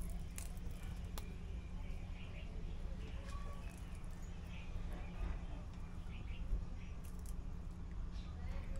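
Faint bird chirps over a steady low rumble, with a couple of light clicks about half a second and a second in from forks picking at fried fish on a paper-lined metal tray.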